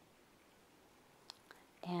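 Near silence: room tone, with two faint clicks a little past the middle, then a woman's voice starting near the end.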